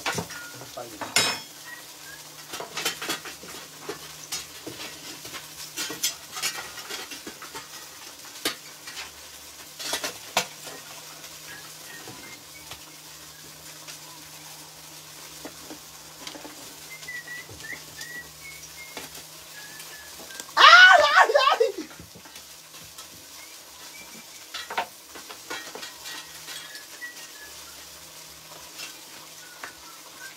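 Food sizzling in a clay cazuela over a wood fire while a long wooden paddle stirs it, scraping and knocking against the pot now and then. A short loud call cuts in about twenty seconds in.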